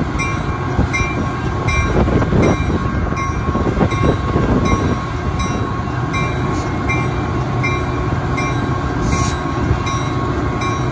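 EMD F40-series diesel locomotive running as it moves slowly past, its engine noise loudest about two to five seconds in. A regular higher ding repeats about every three-quarters of a second over it.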